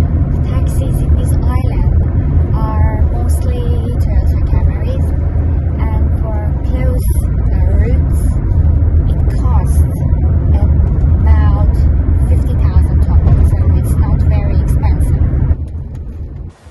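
Toyota car being driven, heard from inside the cabin: a steady low rumble of engine and road noise, with voices talking over it.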